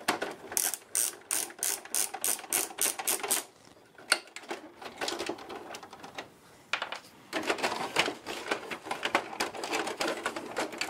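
Plastic parts of a Canon MP470 inkjet printer clicking like a ratchet as they are worked by hand: an even run of about four clicks a second. Scattered clicks follow, then a denser run of clicking and rattling from about seven seconds in.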